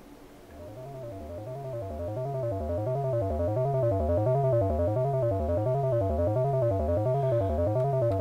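Analogue modular synth sequence from a 4046-based VCO, passed through a vactrol VCA and a Korg MS-20 style low-pass filter, playing a short stepped note pattern that rises and falls and repeats about every half-second. Its level swells up over the first few seconds, then holds steady.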